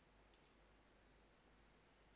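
Near silence: faint room tone, with two quick faint clicks close together about a third of a second in, from work at a computer.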